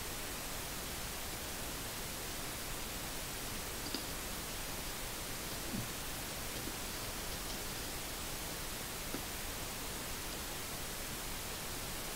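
Steady hiss of recording noise, with a few faint, short clicks near the middle.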